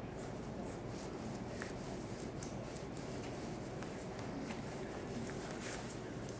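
A Cavachon puppy's claws clicking and scrabbling irregularly on a tile floor, scattered light ticks over a steady low background noise.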